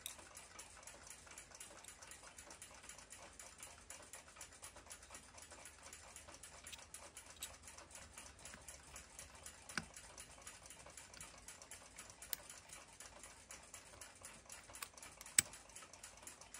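Faint, rapid, even ticking of a mechanical clock, with a few louder clicks from handling the brass movement and metal tweezers in the second half.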